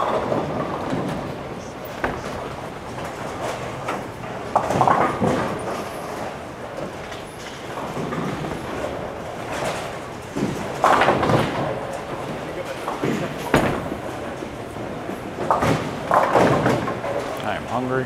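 Bowling alley ambience: indistinct voices of nearby bowlers, with occasional sharp knocks of balls and pins.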